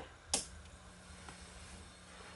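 A switch clicks about a third of a second in, then a faint steady hum as a 70-watt high-pressure sodium ballast powers up a 1000-watt GE high-pressure sodium bulb. The undersized ballast is straining to strike an arc in the much larger bulb.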